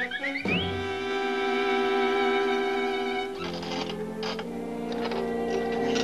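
Cartoon background music led by bowed strings, opening with a quick rising glide. From about halfway, a patter of clicks and taps joins the music: the mechanical clatter of a cartoon egg-painting machine.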